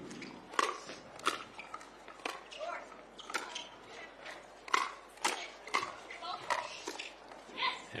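Pickleball rally: paddles striking the plastic ball in a quick run of sharp pops, roughly one to two a second, as the players trade shots at the net.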